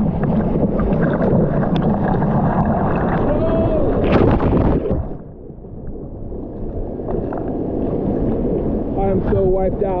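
Seawater rushing and splashing close around a bodyboard as a breaking wave's whitewater washes over it, heard at water level from a camera on the board's nose. The rush is loud and dense for the first five seconds, drops away abruptly, then builds again; a short vocal exclamation cuts through about three and a half seconds in.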